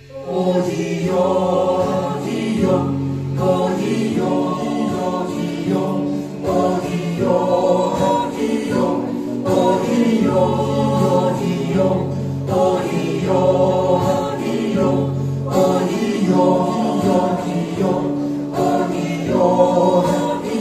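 A small mixed group of male and female voices singing together in harmony, accompanied by an acoustic guitar. The singing comes in strongly right at the start after a brief quieter moment.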